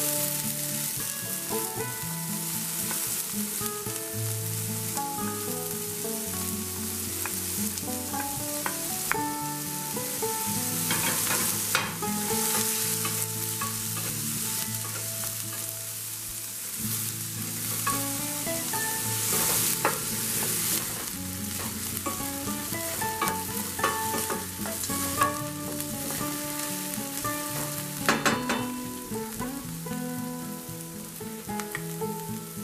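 Diced onion and green chili sizzling in hot olive oil with whole spices in a stainless steel pan, a steady frying hiss, with a wooden spoon stirring and now and then knocking against the pan. Soft background music plays underneath.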